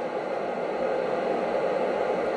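Steady hiss of an FM receiver tuned to the ISS 145.800 MHz downlink, with no clear SSTV tones in it: a weak signal.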